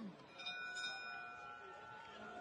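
Boxing ring bell struck about half a second in and ringing on with a steady metallic tone, signalling the end of the round.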